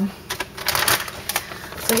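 Clear plastic zip-top bag crinkling as gloved hands pick it up and handle it, a string of short irregular crackles.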